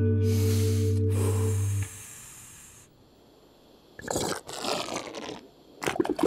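A held cartoon music chord with a hissing swoosh laid over it, both ending about two seconds in. After a short quiet, a loud rumbling cartoon stomach-growl effect comes about four seconds in.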